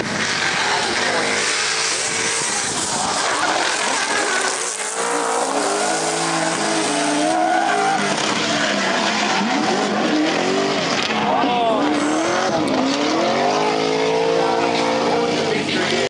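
Two drift cars driven in tandem, engines revving hard with the pitch swinging up and down as the throttle is worked, over screeching tyres sliding on the asphalt.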